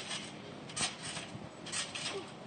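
Faint trampoline bouncing: the mat and springs give two soft hits about a second apart, the second as the jumper takes off into a flip.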